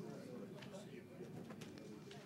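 Faint murmur of several people talking off-microphone, with a few light clicks.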